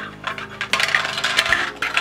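Hard plastic shape-sorter pieces clattering and rattling against each other inside the plastic bucket of a VTech Sort & Discover Drum, a dense run of clicks that starts under a second in.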